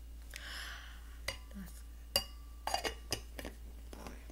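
A short rustling swish, then a run of light clinks and knocks as kitchenware is handled. The loudest clink comes about two seconds in and rings briefly, with a quick cluster of knocks just after.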